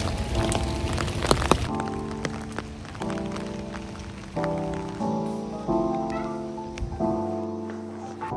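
Rain drops tapping on an umbrella for the first second and a half or so. Then soft background music of keyboard chords takes over, a new chord struck about every second and a half and fading away.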